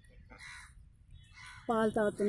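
A sheep bleats loudly near the end, a drawn-out call whose pitch bends. Before it, the first second and a half is quiet apart from faint raspy calls.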